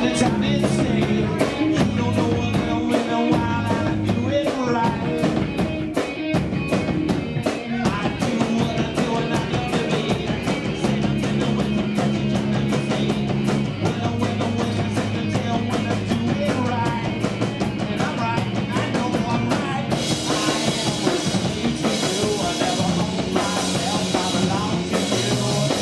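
Live rock band playing: distorted electric guitar, bass guitar and a drum kit keeping a steady driving beat, with a singer's vocals over it. The sound turns brighter and fuller in the high end near the end.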